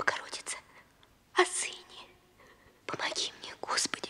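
A woman whispering a prayer in short, breathy phrases broken by pauses.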